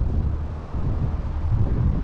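Wind buffeting the camera microphone: an uneven low rumble.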